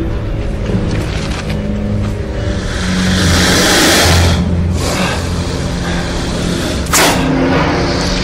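Dramatic film score with held low notes, overlaid by sound effects: a loud rushing swell of noise about three seconds in, and a sharp rush that starts abruptly near the end.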